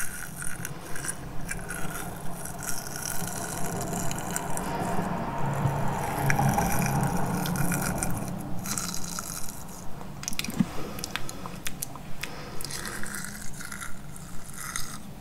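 Close-miked mouth sounds of teeth nibbling on the thin stick of a spoolie: small wet clicks and little bites, repeated a few times a second, with a steadier, denser stretch in the middle.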